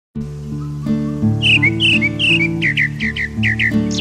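Soft instrumental music with steady low chords, over which a grey-backed thrush sings a quick run of short, clear, falling whistled notes from about one and a half seconds in to near the end.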